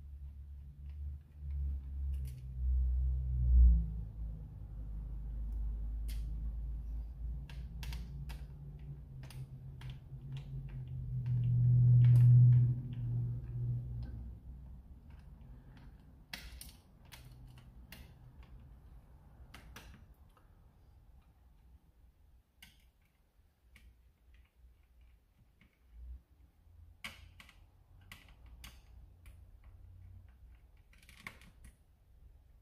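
Scattered clicks and taps of plastic parts and a screwdriver as a Dart Zone Pro MK4 foam-dart blaster is taken apart. A low rumble runs through the first half, loudest about twelve seconds in.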